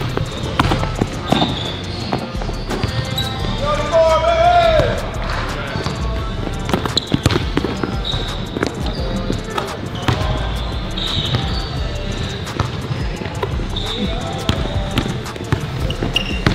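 A basketball being dribbled on a hardwood gym floor, a run of sharp bounces, during one-on-one play, with voices calling out and a loud voice-like call about four seconds in.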